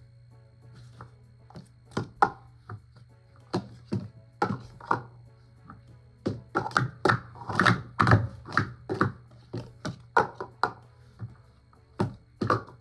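Plastic Speed Stacks sport-stacking cups clacking against each other and the mat as they are rapidly stacked up into pyramids and down again. Scattered clacks through the first half, then a fast flurry of clacks from a little past halfway.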